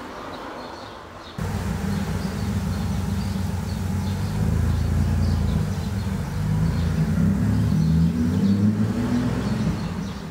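A loud low rumble starts suddenly about a second and a half in and carries on, its pitch shifting, over faint bird chirps.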